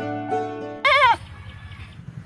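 Plucked-string music stops abruptly about a second in and is followed by a single short, wavering bleat from a young goat.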